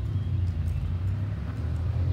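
A motor vehicle's engine running with a steady low rumble.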